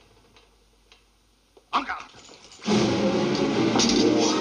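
Near silence with a few faint clicks, broken about two-thirds through by a brief sudden sound whose pitch bends, then lively film-score music starts abruptly and loudly near the end.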